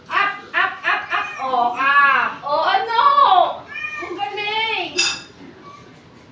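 High-pitched voices talking and calling out, with a short sharp click about five seconds in.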